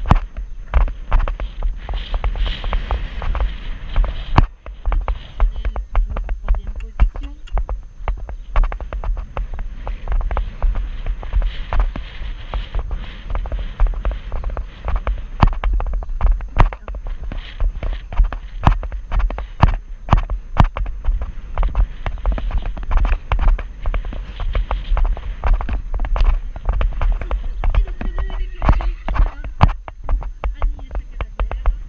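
Horse's hoofbeats at a canter on sand arena footing, an irregular run of thuds and knocks, over a steady low rumble of wind and jolting on a rider-worn action camera.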